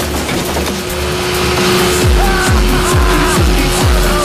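Motorboat engine running at speed with the rush of water, laid over dance music in a film soundtrack; a steady thumping bass beat comes in about halfway through.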